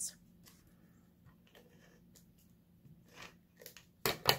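Faint paper handling: sticky notes being peeled off pieces of patterned paper and the card pieces shuffled, as a few soft rustles, the strongest about three seconds in.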